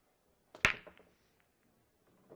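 Hard break shot in 8-ball on a seven-foot pool table: a light click of the cue tip on the cue ball, then about a tenth of a second later a loud crack as the cue ball smashes into the racked balls. A short clatter of balls colliding follows, then a few scattered clicks as they spread.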